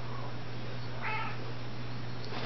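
A small dog gives one short, high whine about a second in while tugging on a knotted rope toy.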